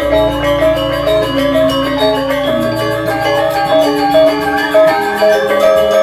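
Balinese gamelan music for the Rejang dance: bronze mallet metallophones ringing in quick interlocking patterns over a deep sustained tone.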